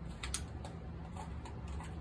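A few faint, scattered light clicks of handling over a steady low hum.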